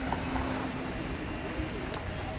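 Ride noise from a bicycle on a paved street: a steady low rumble of wind on the microphone and tyres on the road, with a faint steady hum that fades out about a second and a half in and a couple of light clicks.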